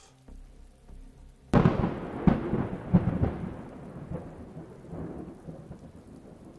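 A sudden crack of thunder about a second and a half in, rumbling and slowly fading over the following seconds.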